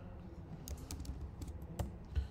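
Typing on a computer keyboard: a quick run of key clicks starting about halfway through, ending in a louder keystroke near the end.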